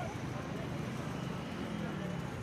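Steady street background of road traffic with the voices of a crowd.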